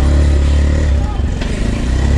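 A motorhome's truck-chassis engine running steadily at low revs as the vehicle creeps forward into a tight parking space, a deep rumble.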